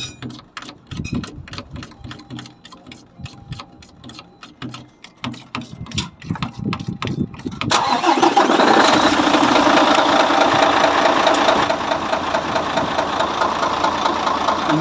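Mercedes-Benz Actros 2040 truck's diesel engine starting suddenly about eight seconds in and then running steadily, after a few seconds of light scattered clicks and knocks. The engine is being started after a fresh oil and filter change.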